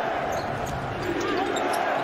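A basketball being dribbled on a hardwood court over a steady hum of arena background noise.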